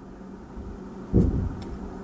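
Quiet room tone, broken a little over a second in by a short low rumble of handling noise that fades within about half a second, with a faint click or two.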